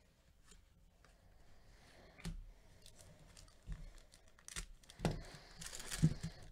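Foil wrapper of a Panini Chronicles baseball card pack being torn and crinkled, along with cards being handled: scattered short rustles from about two seconds in, growing busier and louder near the end.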